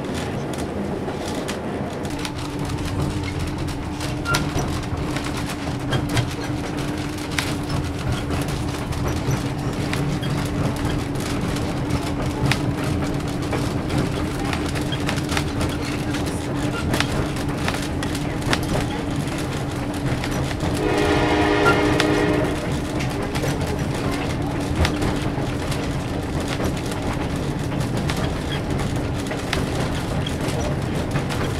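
Steady rumble of a passenger train car running on the rails, with scattered wheel clicks and a steady low drone. About twenty-one seconds in, the train's diesel-electric locomotive sounds its horn once for about a second and a half.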